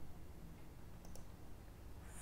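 A few faint, sharp clicks from a computer mouse and keyboard, about half a second to a second in, over low background hiss.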